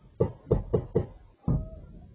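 Five sharp gunshots in quick succession, four close together in the first second and one more after a short gap, each ringing out briefly.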